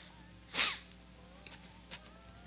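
A single short, sharp breath noise close to the microphone, like a sniff, about half a second in, over faint soft background music.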